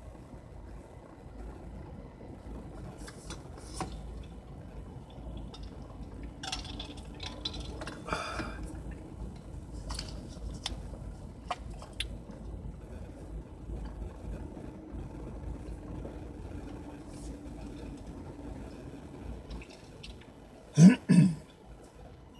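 Inside a car's cabin while driving slowly: a steady low engine and road rumble with scattered light clicks and rattles, and one brief louder sound a little before the end.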